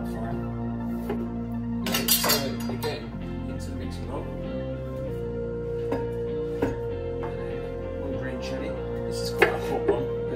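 Chef's knife on a wooden chopping board: chopping and scraping, with a noisy scrape about two seconds in and a few sharp knife taps later, the loudest near the end, over soft background music.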